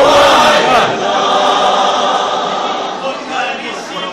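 A church choir singing together, a full mass of voices that is loudest at the start and drops away about three seconds in.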